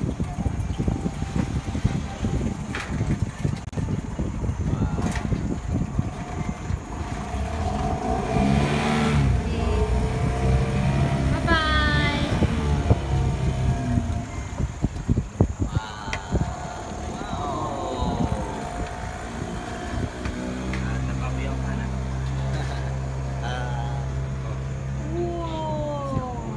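Small boat's outboard motor running with a low drone that wavers in pitch for a few seconds, then holds steady from about 20 seconds in to the end.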